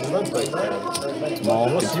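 Men talking: speech that the transcript did not catch.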